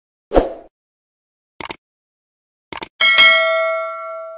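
Subscribe-button animation sound effects: a soft thump, then two mouse double-clicks about a second apart, then a bell-notification ding that rings and fades out.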